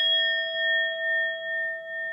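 Notification-bell sound effect: one bell ding struck at the start, ringing on with a slow, regular waver in loudness as it fades.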